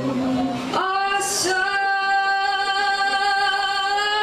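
A woman singing live into a microphone: about a second in she moves to a high note and holds it as one long, steady sustained note.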